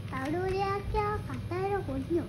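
A child singing three drawn-out, high-pitched notes, the first one longest.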